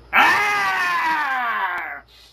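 A man screaming in anger: one long, loud, wordless yell that falls steadily in pitch for about a second and a half, then stops.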